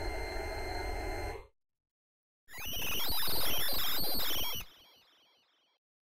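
Reveal Sound Spire software synthesizer playing AI-generated FX preset previews. A noisy, rumbling effect with steady high tones stops about a second and a half in. After a short gap comes a second effect with fast warbling pitch sweeps, which fades out near the end.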